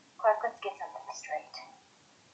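Speech: one short spoken line lasting about a second and a half, with quiet room tone before and after it.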